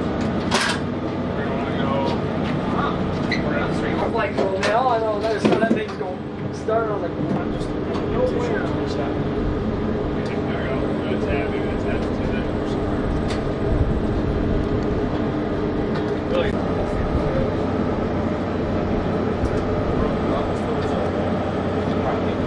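Steady mechanical drone of running machinery, holding one pitch with several tones, with people talking over it around a third of the way in. Scattered short clicks and knocks from metal equipment sound throughout.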